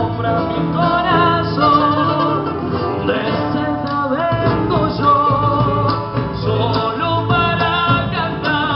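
Live band: a man singing into a microphone over guitar accompaniment, the melody held in long, wavering sung notes.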